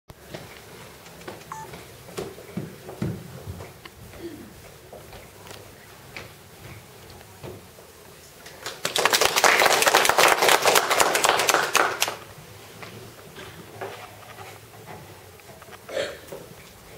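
Audience applauding, a dense patter of clapping for about three seconds starting just past the middle, after a stretch of quiet room sound with scattered small knocks and rustles.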